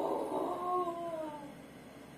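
A toddler's long wordless vocal sound: one drawn-out call, about a second and a half, gliding slowly down in pitch.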